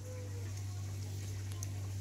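A steady low hum under faint background hiss, with no clear event.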